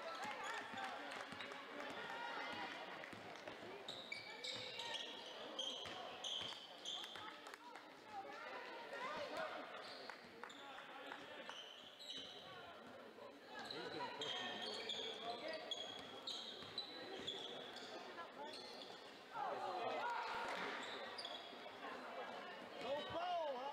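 A basketball being dribbled on a hardwood gym floor during play, with sneakers squeaking in short bursts and the voices of players and spectators echoing in the hall. The voices rise louder near the end.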